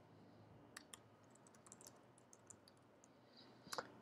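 Faint computer-keyboard typing: a scattering of soft, separate key clicks, a little louder just before the end.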